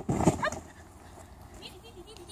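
A dog barks once, a short loud burst right at the start, under a woman's high, rising call of encouragement; the rest is much quieter.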